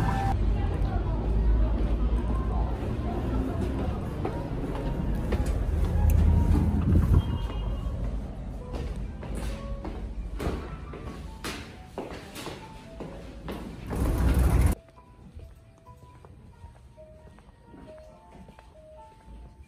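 City street noise with heavy traffic rumble that fades over the first half, with scattered footstep-like clicks. Just before three-quarters of the way in there is a brief loud swell of noise, then the sound drops suddenly to a quiet indoor room where only soft background music with sparse notes is heard.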